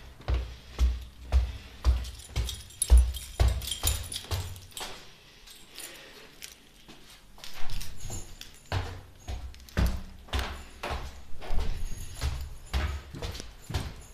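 Footsteps at a walking pace, about two steps a second, with rustling from the handheld camera. The steps pause for a couple of seconds midway, then resume.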